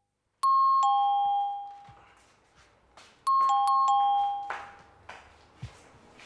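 Electronic two-tone ding-dong doorbell chime. It rings once, a high note then a lower one, and about three seconds later it rings twice more in quick succession.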